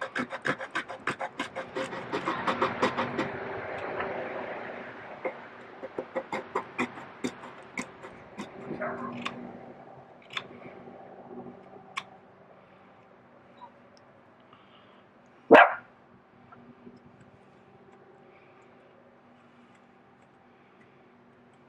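A dog whining and yipping, excited, with one loud bark about three-quarters of the way through. Short clicking knife strokes on wood run through the first half.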